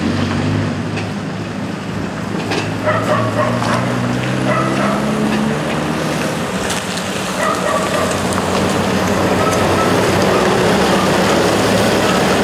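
Mercedes-Benz van's engine running at low speed as the van crawls over a potholed road, a steady low hum that grows slightly louder toward the end, with a few light knocks.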